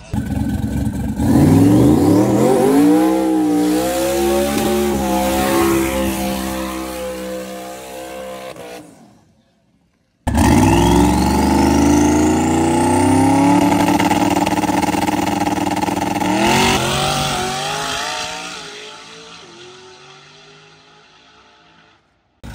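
Drag car's engine at full throttle launching and accelerating away, its pitch climbing, dropping at a shift of the three-speed TH400 automatic, and climbing again as it fades down the strip. Heard twice, with a sudden cut and a second of silence between.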